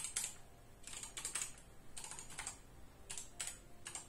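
Computer keyboard being typed on in irregular short runs of key clicks.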